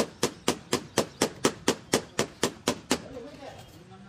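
A hammer beating rapidly on metal column formwork, about four sharp strikes a second, stopping about three seconds in: tapping the form to compact the fresh concrete in place of a vibrator. A voice follows faintly at the end.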